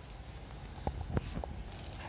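Footsteps on a hard tiled floor: a few sharp taps about a second in, over a low steady hum.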